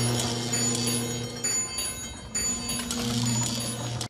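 Electric bell ringing with rapid clapper strikes over a steady electrical hum, a movie sound effect; the hum drops away for a second or so in the middle.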